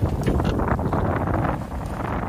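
Wind buffeting the microphone, a steady low rush.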